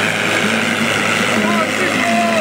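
John Deere 4020 tractor's engine running steadily at full load as it pulls a weight-transfer sled, with faint voices from the crowd over it.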